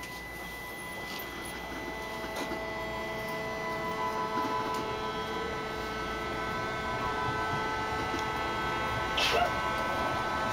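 BART train running through a tunnel, heard from inside the car: a rumble that grows gradually louder, with several steady high whining tones over it. A short knock comes near the end.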